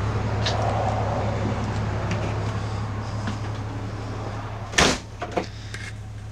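Horse trailer's living-quarters entry door swung shut with a single loud knock about five seconds in, after a few light clicks. A steady low hum runs underneath and is quieter once the door has closed.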